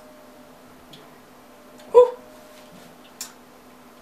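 A man eating a mouthful of pasta, mostly quiet chewing over a low steady hum. There is one short throaty vocal sound about two seconds in, and a small sharp click about a second later.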